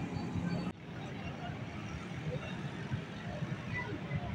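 Outdoor road ambience: a steady rumble of distant traffic with faint voices. The sound changes abruptly a little under a second in, at a cut in the footage.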